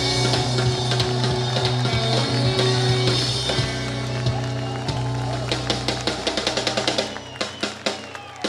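Live blues-rock band ringing out the final chord of a song, with bass and guitar holding a low note over the drum kit. Over the last couple of seconds the drums break into a fast roll of rapid strikes that winds the song down to its ending.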